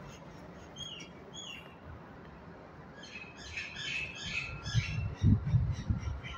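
Small birds chirping: two short high chirps about a second in, then a burst of rapid chirping from about halfway through. Low thuds near the end are the loudest sound.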